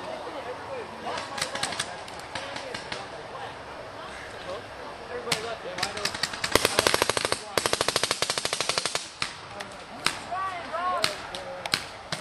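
Paintball markers firing: scattered single shots, then a long, rapid string of many shots a second about six and a half seconds in that lasts some two and a half seconds, then a few more scattered shots.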